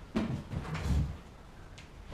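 Knocks and thuds of someone rushing back and dropping onto a metal-framed plastic chair. The dullest, loudest thud comes about a second in.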